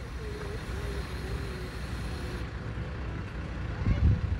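Steady low rumble of road traffic, with a faint wavering engine whine in the first half.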